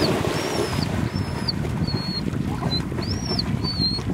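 A Labrador retriever plunging into lake water with a splash, then swimming out with steady sloshing water noise. A bird repeats short high whistled notes about twice a second.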